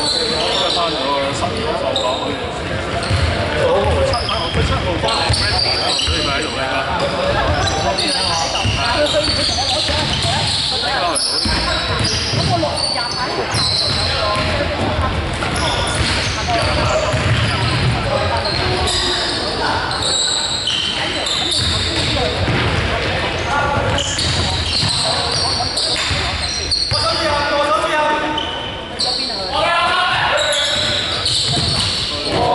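Live game sound of a basketball game in a sports hall: the ball bouncing on the wooden court, short high sneaker squeaks and players' voices calling out, all echoing in the large hall.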